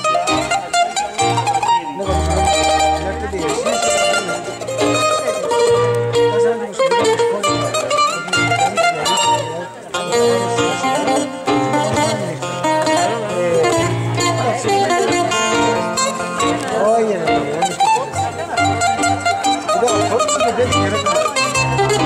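Greek bouzouki playing a plucked melody in the instrumental introduction to a song, with the band's low sustained notes underneath.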